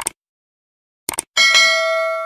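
Sound effects for a subscribe-button animation: a short mouse click at the start, a couple more clicks about a second in, then a bright notification-bell ding that rings on and fades.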